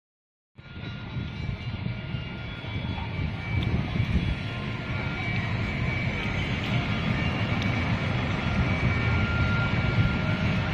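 Outdoor street ambience: a steady low rumble of traffic with a few faint, steady high tones above it. It starts abruptly about half a second in and grows gradually louder.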